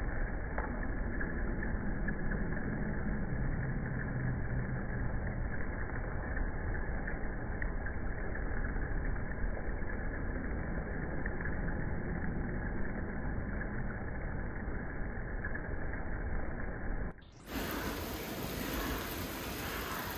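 Rain and hail falling on a city street with passing traffic: a steady, dense hiss with a few faint ticks, sounding dull and muffled. About 17 seconds in it drops out briefly and comes back fuller and brighter.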